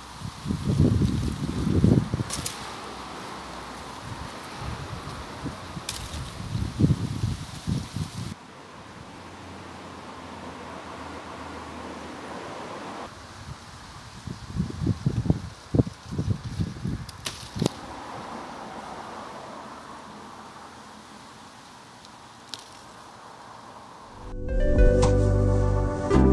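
Wind buffeting the microphone in three bouts of low, irregular gusts over a steady hiss, with a few short sharp clicks in between.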